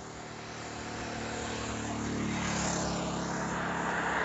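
Road traffic going by: a motorcycle engine hum grows louder as it approaches and passes, with the tyre noise of approaching cars rising near the end.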